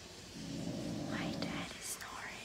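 A young woman whispering softly, with no clear voiced words, over a steady background hiss.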